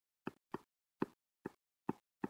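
Short irregular taps, about two a second, of a stylus tip on a touchscreen as a handwritten equation is written stroke by stroke.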